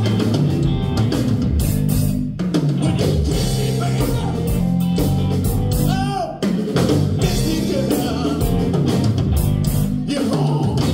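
Live band playing: a man singing over electric guitar and a drum kit keeping a steady beat.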